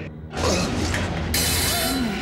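Clothes hangers scraping and rattling along a metal closet rod as garments are pushed aside. A sharp, hissing scrape comes near the end, over a low drone of music.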